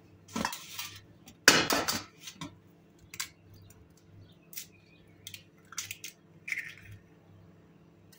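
An egg cracked on a stainless-steel mixing bowl: a sharp knock about a second and a half in is the loudest sound, followed by scattered light clicks and taps against the steel as the shell is handled.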